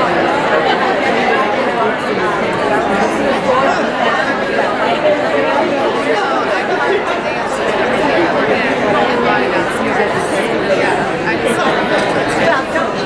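Crowd chatter: many people talking at once in a large conference hall, a steady mass of overlapping voices with no single voice standing out.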